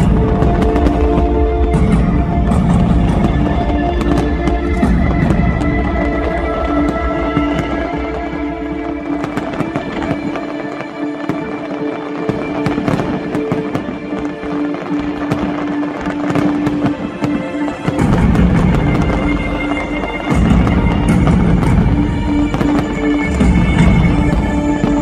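Aerial fireworks bursting and crackling over loud music with long held notes. The heavy booms are dense for the first ten seconds or so, thin out in the middle, and build up again for the last several seconds.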